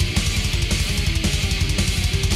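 Loud heavy rock music with distorted electric guitar over a rapid, pounding drum beat.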